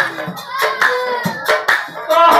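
Several people clapping by hand, a little unevenly, under a man's singing voice in Assamese Nagara Naam devotional singing. The drums are silent here.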